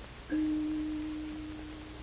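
A single clear, bell-like chime tone, struck once about a third of a second in and fading slowly.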